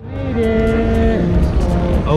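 A long, drawn-out voice sound that holds one note for about a second, then drops to a lower note, over steady hall background noise.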